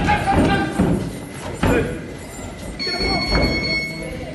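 Dull thuds from two boxers sparring in a clinch: gloved punches and footwork on the ring canvas, under loud voices. A steady high tone comes in near the end.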